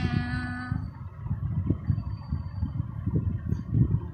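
A white long-haired cat's meow trailing off right at the start, followed by a low, uneven rumble with small knocks close to the microphone.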